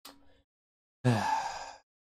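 A man sighing once, a short breathy exhale with a voiced start, about a second in.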